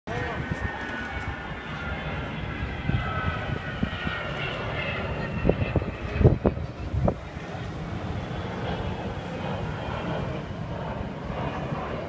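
Avro Vulcan bomber's four Rolls-Royce Olympus turbojets flying past: a steady low rumble with high whistling tones over it that slide in pitch during the first few seconds. A few sharp thumps come about six to seven seconds in.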